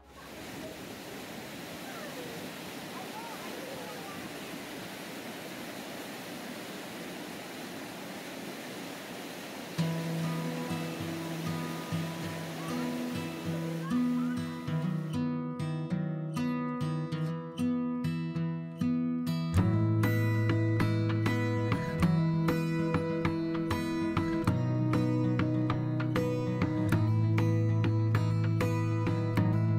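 Thunderbird Falls waterfall rushing steadily, then background music fades in about a third of the way through and builds to a full beat with bass, covering the water.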